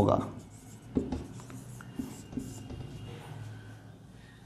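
Marker pen writing on a whiteboard: a series of short strokes and taps of the tip against the board.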